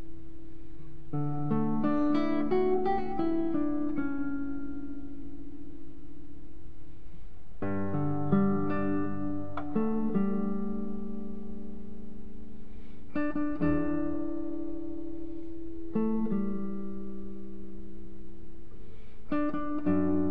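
Solo nylon-string classical guitar playing a slow, lyrical melody. A quick run of plucked notes about a second in, then phrases near 8, 13, 16 and 19 seconds, each left to ring out.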